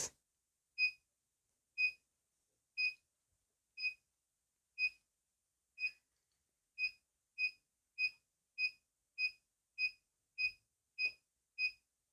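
Xiaomi Five UV-C sterilizer lamp beeping its start-up sequence: short high beeps about once a second, quickening about seven seconds in to nearly two a second.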